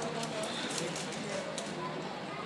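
Indistinct voices murmuring, with several light sharp clicks or taps in the first second and a half.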